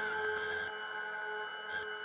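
Ambient electric guitar drone through a board of effects pedals: several high tones held steady with no picked notes, part of the texture dropping away about two-thirds of a second in, with a brief flicker near the end as the pedals are adjusted.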